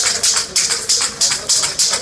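Aerosol spray paint cans hissing in rapid short bursts, about four a second.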